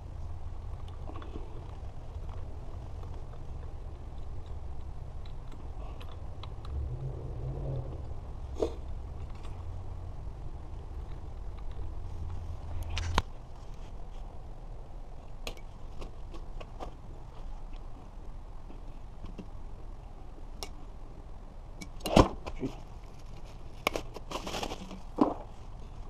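Small metal screws clicking and clinking as they are unscrewed by hand from a hub motor wheel's brake disc and gathered in the palm, then scattered knocks as the fat-tire wheel is handled, loudest a few seconds before the end. A low steady hum runs underneath and cuts off with a click about halfway through.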